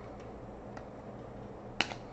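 Trading cards handled on a tabletop: a few faint ticks, then one sharp click near the end as a card is set down on a stack. A faint steady low hum runs underneath.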